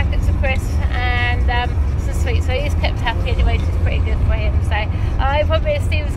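Steady low road rumble inside a moving car's cabin, with a person's voice talking and vocalising over it. One held, drawn-out sound comes about a second in.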